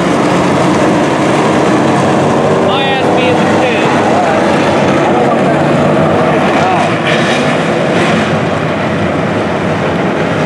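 A pack of USRA stock cars racing on a dirt oval, their engines running at speed in a loud, steady drone, with single engines rising and falling in pitch as they pass.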